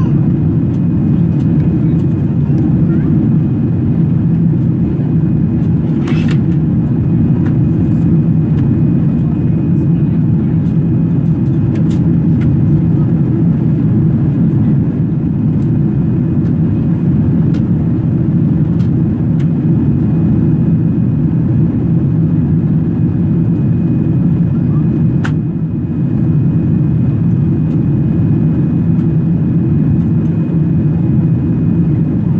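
Jet airliner cabin noise: a steady low rumble of engines and airflow, with a faint, steady high whine and a few faint clicks.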